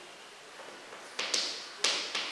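Chalk tapping against a blackboard while words are written. After a quiet first second come about three sharp taps in quick succession.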